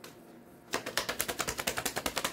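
Tarot deck being shuffled: after a brief quiet, a fast run of card clicks starts about three-quarters of a second in, roughly ten a second.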